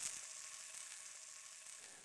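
Faint sizzling of food frying in a hot pan, fading away.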